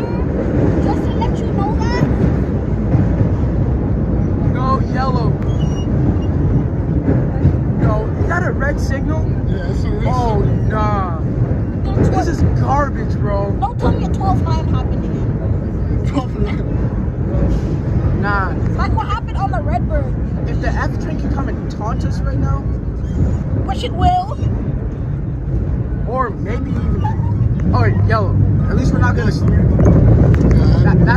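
A 1932 R1 subway car running through a tunnel, its wheels and traction motors making a steady rumble, with the low rumble swelling a little near the end. Over it runs loud, overlapping chatter and shouting of passengers.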